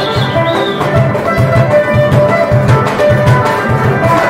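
Two acoustic guitars strumming and picking a melody over a cajón, whose low strokes keep a steady beat.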